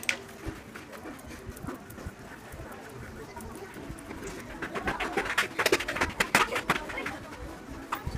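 An Allen key working the clutch spring bolts on a Yamaha SZ's pressure plate, metal clicking on metal, with a run of sharp clicks about five to seven seconds in. A bird calls in the background.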